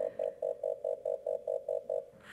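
Warning beeper on a Honeybee Robotics robotic drill rig: a steady train of short beeps at one mid pitch, about four or five a second, sounding to warn anyone in the machine's path.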